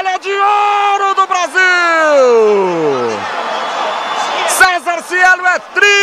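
Men yelling in celebration at a race win: a long held yell that slides down in pitch over about three seconds, then a run of short excited shouts near the end, over crowd noise.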